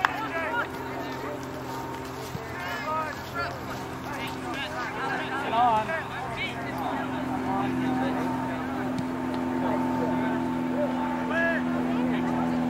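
Distant shouts and calls from youth soccer players and people on the sideline, none of them clear words, over a steady engine-like hum that grows a little louder in the second half.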